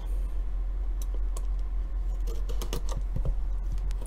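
A cardboard trading-card blaster box being handled, fingers tapping and picking at its top flap: a scattering of light, irregular clicks and taps over a low steady hum.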